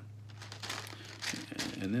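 Thin Bible pages being turned and rustled by hand, a run of irregular crinkling strokes.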